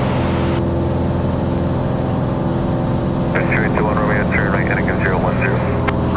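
A Cessna 182's flat-six piston engine and propeller give a steady drone inside the cabin. A thin radio voice breaks in over it for about two seconds past the middle.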